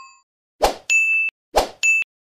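Sound effects of a subscribe-button animation: a lower chime rings out and fades at the start, then twice a sharp click is followed by a short, bright ding.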